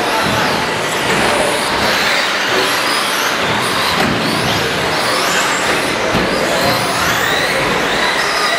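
Several 1/10-scale electric short-course RC trucks racing together, their motors whining and rising and falling in pitch with the throttle over a steady wash of running noise.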